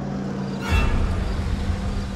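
A low steady hum, then from just under a second in a car's engine and tyres rumbling as the car drives up.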